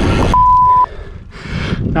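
A bike computer on the handlebars gives a single steady electronic beep lasting about half a second, marking the start of a workout interval. Just before the beep, a rush of wind noise on the microphone stops suddenly.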